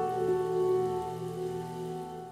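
Running water like a shower spraying onto a tiled floor, over a held music chord; both slowly fade.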